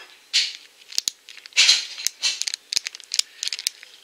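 Small clear plastic packet of craft cabochons being handled. The plastic crinkles in a few short rustles, with many light clicks in between as the pieces inside shift.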